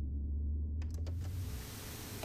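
A deep low rumble fades out. About a second in, after a few clicks, the steady rushing noise of an Extra 300 aerobatic plane's cockpit in flight comes in: engine and airflow as heard inside the canopy.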